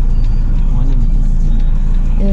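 Steady low rumble of a car heard from inside its cabin, with a faint voice about a second in.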